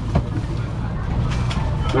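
Busy market background: a steady low hum under indistinct chatter, with a few sharp clicks and rustles as plastic-wrapped packages and plastic baskets are handled.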